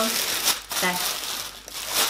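Clear plastic packaging bag crinkling and rustling irregularly as hands pull it open around a knitted garment.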